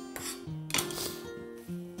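Background music of held instrument notes, with light kitchen handling noises: a brief rustle or clatter of utensils, the loudest about three-quarters of a second in.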